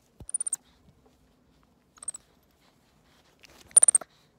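White-faced capuchin monkey close to the microphone giving three short, very high-pitched chirps, each made of rapid clicks, the last one the loudest.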